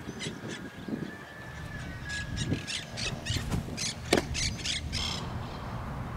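A bird calling over and over in short, harsh calls that come faster toward the end, with a single sharp crack about four seconds in.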